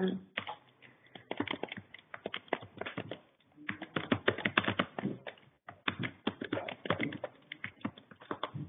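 Typing on a computer keyboard: quick runs of key clicks in bursts with short pauses, as an email address is entered.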